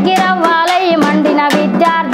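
A woman singing a Telangana folk song in Telugu, over a steady low drone and regular drum strokes about three a second.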